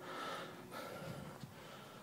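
Faint background hiss with a soft breath near the start, fading off.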